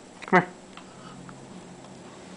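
A puppy gives one short bark, falling in pitch, about a third of a second in.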